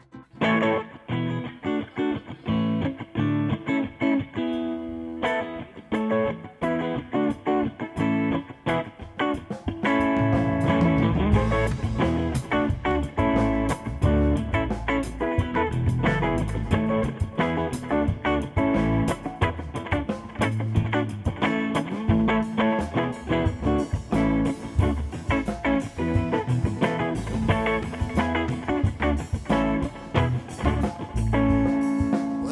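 Live band music: an electric guitar plays a picked intro alone, and about ten seconds in the bass and drums come in and the full band plays on with a steady beat.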